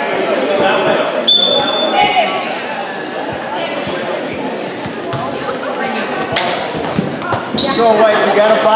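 Basketball bouncing on a hardwood gym floor, with short high squeaks of sneakers and a steady murmur of crowd voices in a large, echoing hall.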